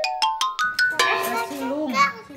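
Edited-in cartoon sound effect: a quick rising run of about eight bright plinked notes in under a second. It is followed by a young child's voice over light background music.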